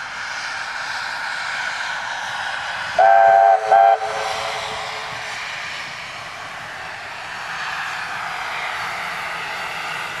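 NSW 36 class 4-6-0 steam locomotive 3642 running past with its passenger carriages, with the steady noise of the moving train. About three seconds in it gives two whistle blasts, a longer one and then a short one, several notes sounding together; these are the loudest sounds.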